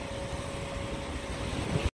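Steady outdoor background noise, a low rumble under an even hiss with a faint steady hum. It cuts off suddenly just before the end.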